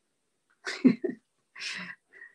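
A person sneezing: a short voiced intake followed by a hissing burst, heard through a video-call microphone.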